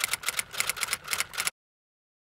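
Typewriter sound effect: a rapid run of key clicks, about eight a second, that stops suddenly about a second and a half in.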